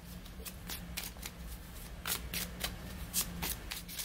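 A deck of tarot cards being shuffled by hand, a quick irregular run of soft card clicks and flutters.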